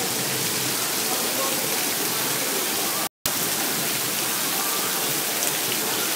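Heavy tropical downpour: a steady hiss of rain pouring onto pavement. The sound cuts out for a split second about three seconds in.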